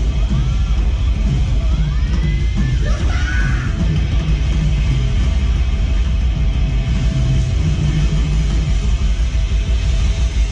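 A metal band playing live through a club PA, with pounding drums and heavily distorted low-end instruments that dominate the sound. A few sliding high notes come about two to three seconds in.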